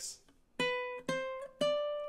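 Ukulele played fingerstyle: three single notes are plucked on the A string at the 2nd, 3rd and 5th frets, B, C and D rising in turn, about half a second apart, each left to ring.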